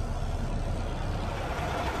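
Mack MP8 inline-six diesel in a 2012 Mack Pinnacle day cab truck idling, a steady low drone.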